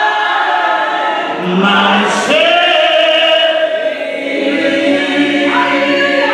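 A small group of women singing a worship song together, voices holding long notes.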